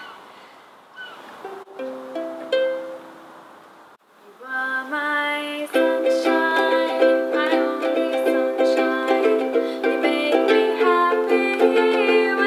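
Ukulele being played: a few single plucked notes about two seconds in, then strummed chords starting just before halfway and settling into steady strumming.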